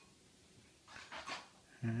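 Quiet room with a few short breathy puffs about a second in, then a man's voice saying "Hi" near the end.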